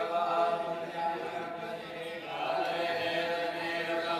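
Several voices chanting a Hindu devotional recitation together in long, held notes, easing briefly about halfway through and then picking up again.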